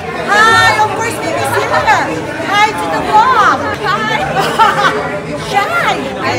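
People chatting, several voices overlapping in a large, echoing church hall.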